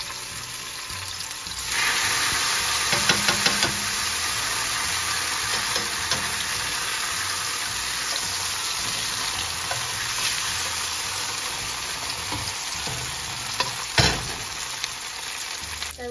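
Tortillas dipped in mole sizzling as they fry in hot oil in a pan. The sizzle grows louder about two seconds in as another tortilla goes in, with metal tongs clicking a few times soon after and one sharp tap near the end.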